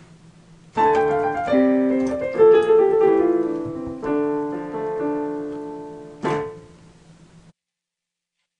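Noisy piano recording played back without noise reduction. A faint hiss is heard for about a second before the first notes come in. The piano then plays a slow passage of held notes with a sharp accented chord near the end, and the sound cuts off shortly before the end.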